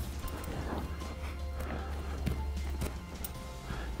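An Arabian mare's hooves pawing and shifting restlessly on arena sand, an uneven run of soft knocks, over steady background music. It is the pawing and dancing of a hot-blooded, busy horse fidgeting as hobbles go on for the first time.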